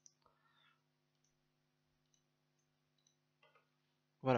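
Near silence with a few faint computer mouse clicks, the sharpest just after the start, over a low electrical hum.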